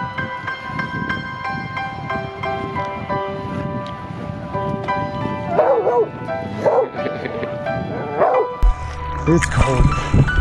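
Soft background music with sustained notes, over which a small dog gives three short whining yips in the second half. Near the end the music is joined by rushing water noise.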